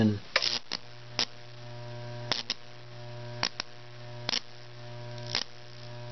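Microwave oven transformer humming steadily under high-voltage load while current burns between two nail electrodes in wet pine, with sharp crackles of arcing about once a second.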